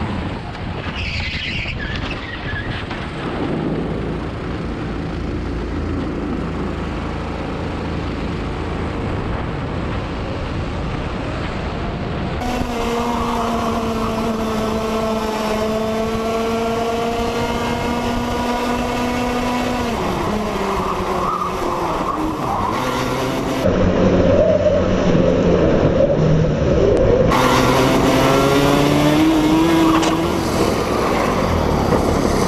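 Go-kart engines at racing speed, heard onboard with wind on the microphone. About twelve seconds in a higher, steady kart engine note takes over and holds, then falls away as the kart slows. Louder, rougher engine and tyre noise follows, with the engine note rising again near the end.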